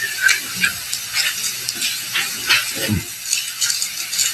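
Paper rustling and shuffling close to a desk microphone: a run of irregular short crackles.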